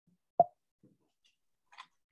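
A single short, dull thud about half a second in, followed by a couple of faint clicks and taps.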